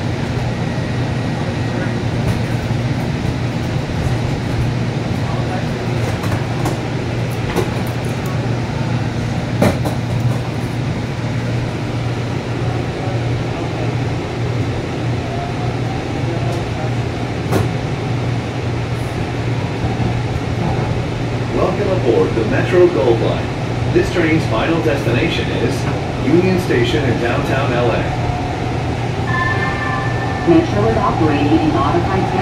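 Interior of a moving Breda P2550 light-rail car as it pulls away from a station: a steady low hum from the running gear with rolling noise and a few short knocks, and a faint rising whine about halfway through. Voices talk through the latter part.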